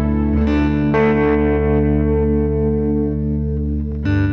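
Instrumental background music led by an effects-laden guitar: chords struck about half a second and a second in, then left to ring.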